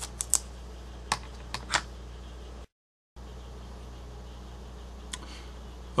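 A few light clicks and taps as telescope gear is handled, over a steady low hum. A little over halfway through the first half the sound drops out completely for about half a second at a cut, after which only the hum remains, with one faint click near the end.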